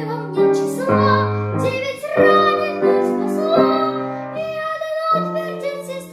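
A young girl singing a Russian wartime song solo to piano accompaniment, the piano holding chords that change about once a second under her voice.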